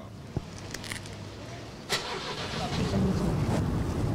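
Minibus engine running with a low rumble. A sharp knock comes about two seconds in, after which the engine sounds louder.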